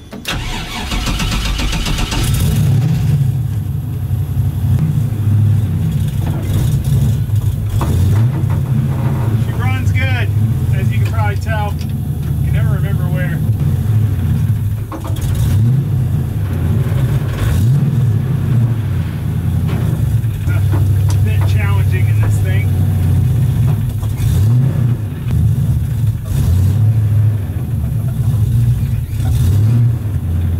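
A swapped GM LS V8 in a Mazda RX-7 cranks on the starter and catches within about two seconds. It then idles, with several short blips of the throttle. It is running with no accessory belt fitted.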